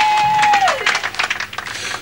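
Applause from an audience: a dense patter of clapping that eases somewhat toward the end. A single steady high tone rings over it for just under a second, then slides down in pitch and stops.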